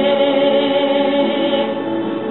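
A woman singing solo into a handheld microphone, holding a long note with vibrato.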